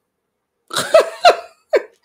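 A woman laughing in three short bursts, each falling in pitch, starting a little under a second in.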